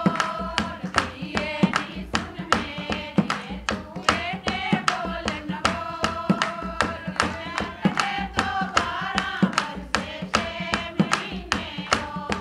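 A group of women singing a folk song together, accompanied by a hand-played dholak and rhythmic hand-clapping, about three beats a second.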